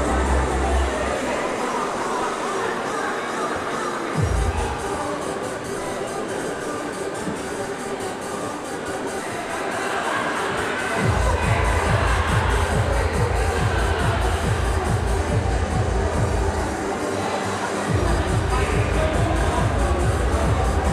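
Background music. A steady bass beat comes in about halfway through and drops out for about a second near the end.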